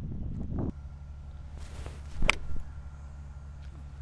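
A golf iron striking the ball: one sharp click a little over two seconds in, with a brief ring after it. Before it, a low wind rumble on the microphone.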